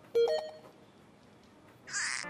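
Edited-in cartoon sound effects: a short electronic, beep-like blip about a quarter second in, a quiet lull, then a quick swish at the very end.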